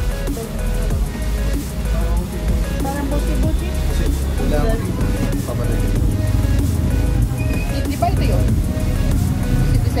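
Music plays throughout, with indistinct voices at times. From about halfway through, the low rumble of a moving road vehicle runs underneath.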